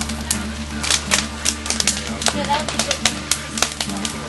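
Irregular sharp crackles and pops from an open wood cooking fire with large frying pans on it, over a steady low hum.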